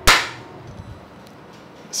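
A single sharp hand slap with a brief ring-out.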